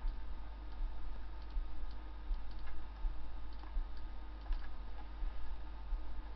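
A few faint, irregular clicks of a computer mouse over a steady low electrical hum and hiss.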